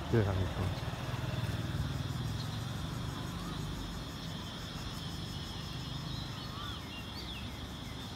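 Steady city traffic rumble heard from an elevated walkway over a road, with a steady high-pitched whine and a few short chirps in the second half.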